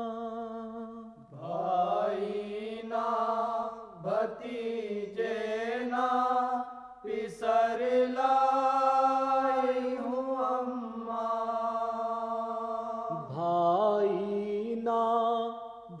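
A male voice singing long, held, wordless notes of a Muharram lament (noha), with gliding pitch and a wavering vibrato.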